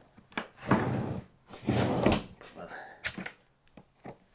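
Heavy carpet-covered cargo drawer sliding on its rollers, with clicks and clunks from its metal latch handle: a sharp click, then two rushing slides and a few smaller clicks.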